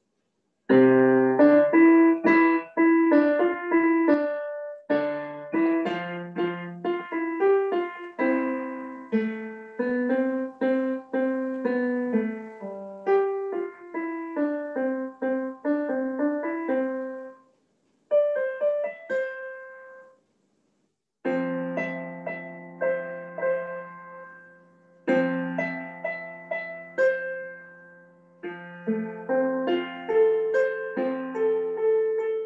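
Roland digital piano playing a solo piece, a melody over bass notes and chords. The playing breaks off twice, briefly, a little past halfway, then carries on.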